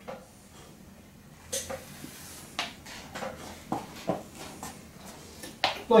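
Hands rubbing and pressing over the back of a knit top: soft, irregular fabric rustles and a few light knocks, beginning about a second and a half in.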